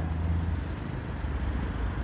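A motor vehicle's engine running in street traffic, a steady low hum that fades about half a second in, leaving general traffic noise.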